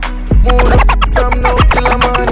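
Dancehall DJ mix playing an instrumental beat, with DJ scratch sounds over it. The beat comes in at full level about half a second in.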